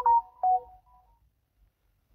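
Smartphone message notification chime: a quick run of short electronic tones that fades out about a second in.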